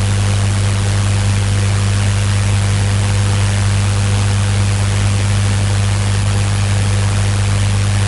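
Steady electrical hum, strongest low near 100 Hz with a weaker overtone above it, under a loud, even hiss that does not change.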